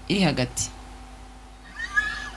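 A woman's voice ends a short phrase, then the room goes quiet. Near the end comes a brief squeak that slides in pitch, from fingers sliding along acoustic guitar strings as the hand settles on the neck.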